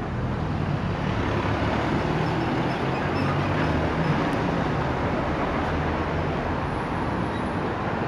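Steady city street traffic: car engines running with tyre and road noise, a low engine hum holding through.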